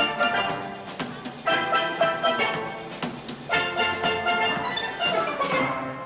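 Steel band of steel pans playing the closing bars of a soca piece: full chords struck together about every two seconds and left to ring, with a falling run of notes near the end.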